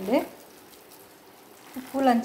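Faint crackly rustling of a hand squeezing and mixing coarse-ground dal batter for masala vada, between two brief bits of speech.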